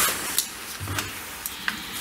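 A few small clicks and taps of hands handling an open Canon AS-6 waterproof 35 mm film camera on a table, over a steady hiss.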